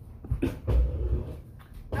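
Thumps and a low rumble of movement right at the microphone as a person gets up and reaches past it, with a faint, short whine-like sound at the same time.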